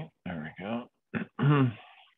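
A person's voice in four short bursts, words too unclear to make out, the last burst the loudest.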